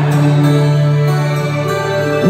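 Live band and orchestra playing a held chord over a steady low note, with no singing.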